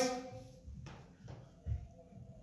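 A few soft footsteps on a rubber-matted gym floor, the last a short low thump near the end.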